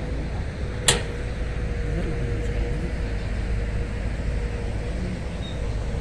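Excavator engine running steadily with a faint constant whine. A single sharp click comes about a second in.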